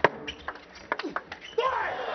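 Table tennis rally: celluloid ball struck by rackets and bouncing on the table in a quick run of sharp clicks. The point ends on a backhand winner, and voices rise near the end.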